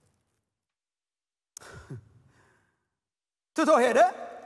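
A man's sigh, a short breathy exhale with a falling voice, about a second and a half in, after a near-silent pause. Near the end his speech starts again, loud.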